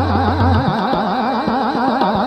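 Hindustani classical singing of raag Shiv Abhogi: a fast taan, the voice running rapidly up and down in quick oscillations, over tabla playing Rupak taal and a steady drone.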